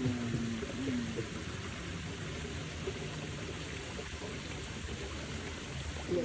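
Steady rushing background noise with no clear events, like wind on the microphone or running water, with a few low spoken words in the first second.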